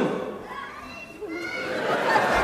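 Indistinct voices in a large hall, including a child's high voice, quieter in the middle.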